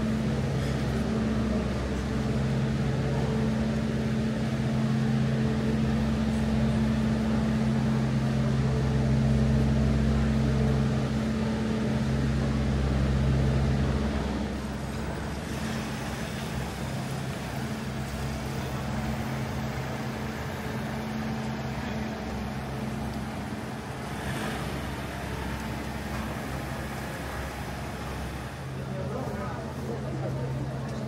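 City street traffic: a vehicle engine hums steadily at a low pitch, louder for the first half and then fading somewhat, with pedestrians talking.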